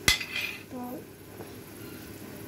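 A steel spoon knocks sharply once against a non-stick frying pan while stirring fryums in hot oil, with a short clatter right after. Then a faint steady sizzle of the frying oil.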